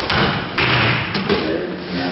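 Bodies landing on padded dojo mats as aikido students are thrown and take breakfalls: a thud at the start, a heavier one about half a second in, and lighter knocks a little later.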